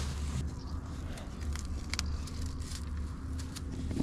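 A steady low rumble with scattered light clicks and rustles as an electric fence rope is pulled across and fastened to a post. The clicks are strongest about two seconds in.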